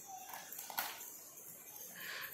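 Faint handling of hard plastic toys on a tile floor, with one light knock a little under a second in as a toy is set down.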